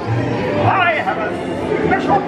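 Indistinct voices talking and chattering, with no clear words.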